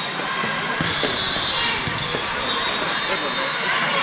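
Volleyballs being struck and bouncing on the court floor: a few sharp thuds, echoing in a large hall, over a steady background of voices and crowd chatter.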